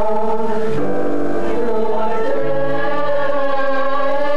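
A stage musical's cast singing together in chorus, holding long chords that change a couple of times.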